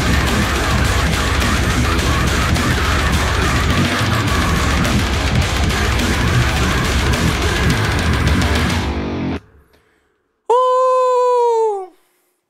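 Electric guitar playing a heavy metal riff that cuts off suddenly about nine seconds in. After a second of silence, a single held tone sounds for about a second and a half, sagging in pitch as it ends.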